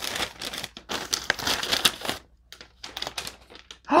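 Paper crinkling and tearing as a wrapped gift is unwrapped: a dense run of rustles for about two seconds, then sparser rustles.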